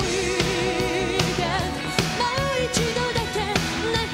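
Live pop-rock song with a female lead vocal over a full band. The singer holds a wavering note for about the first second, then sings shorter phrases over the steady beat.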